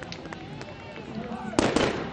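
Gunshots: a sudden loud crack about a second and a half in, over the low murmur of a street crowd.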